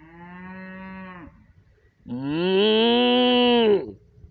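Cattle mooing twice: a shorter, quieter moo, then a longer, much louder one that rises and falls in pitch.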